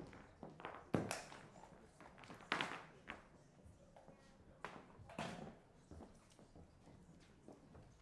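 Irregular footsteps and small knocks on a stage floor as a person moves about and handles things, with a sharp knock about a second in as the loudest sound.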